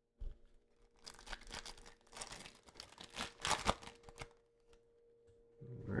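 A foil trading-card pack being torn open and its wrapper crinkled: a series of noisy rips and rustles from about a second in until about four seconds in, after a soft knock at the start.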